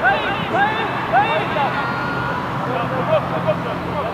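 Short shouts and calls from football players and spectators across an open pitch, several voices overlapping, with a faint steady low hum underneath from about halfway.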